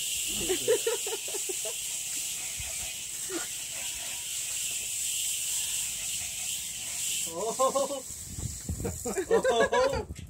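A steady high-pitched hiss that cuts off suddenly about seven seconds in, with brief bursts of voices over it near the start and the end.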